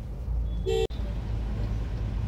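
Steady low engine and road rumble inside a car moving slowly in traffic, with a short car-horn toot just under a second in that cuts off suddenly.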